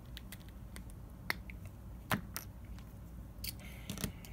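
A scattering of light, sharp clicks and taps, irregularly spaced, from small hard parts or tools being handled during a phone repair, over a faint steady hum.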